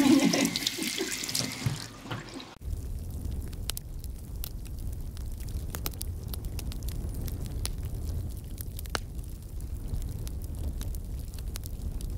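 A woman laughing for about two seconds, then an abrupt change to a steady low rumble scattered with sharp clicks and crackles.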